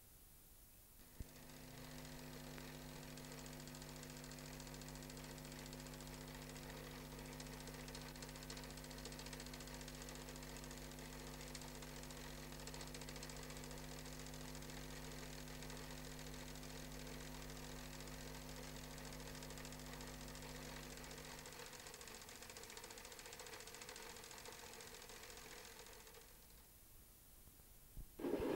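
A faint, steady mechanical hum like a small motor running, starting with a click about a second in; its deepest part drops out a few seconds before the end.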